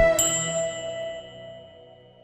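A backing music track fades out, and about a quarter second in a single bell-like metallic chime is struck and rings away.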